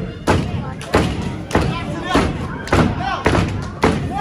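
Heavy thuds in a steady rhythm, about one every two-thirds of a second, with shouting voices between them.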